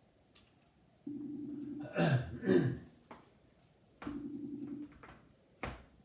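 Outgoing call ringing tone from a computer: two steady rings, each just under a second long, about three seconds apart. A cough falls between them and a short knock comes near the end.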